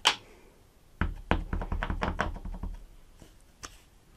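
Clear acrylic stamp block tapped again and again onto a foam ink pad to ink the stamp, a quick run of soft taps at about six a second lasting about two seconds. A sharp click comes at the very start and a lighter one near the end.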